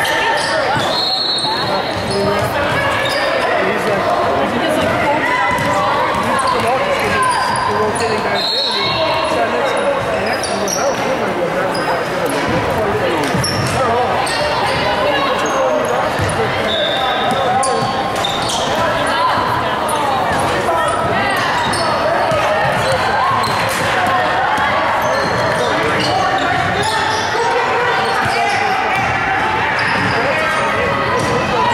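Indoor basketball game: a ball bouncing on the hardwood court and a few short high squeaks typical of sneakers on a gym floor, under a steady hubbub of voices from players and spectators, echoing in the large hall.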